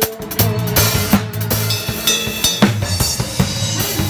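Drum kit played live in a band: a steady groove of kick drum, snare and cymbal hits over the band's bass and other instruments.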